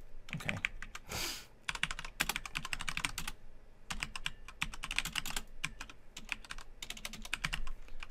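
Typing on a computer keyboard: quick runs of key clicks, with a short pause about three and a half seconds in.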